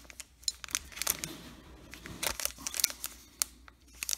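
Foil trading-card pack wrappers crinkling in the hands as they are handled, a string of small crackles and clicks.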